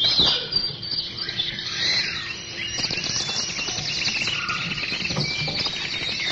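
Many birds chirping together, a dense chorus that starts suddenly.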